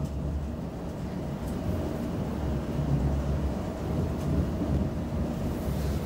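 Inside a Class 720 Aventra electric multiple unit running along the line: a steady low rumble of the wheels on the track, with a faint steady hum above it.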